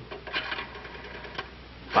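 Rotary telephone dial being turned and clicking as it runs back, a quick run of clicks about half a second in and a single click later on.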